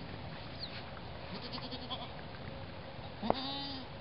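Boer goat bleating: one loud, held bleat of about half a second near the end, with a fainter, shorter bleat about a second and a half in.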